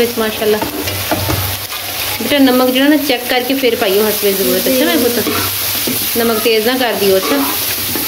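Metal spoon stirring and scraping diced potatoes, chicken and shredded cabbage around a metal pot over a steady sizzle of frying, with wavering scraping tones through the middle.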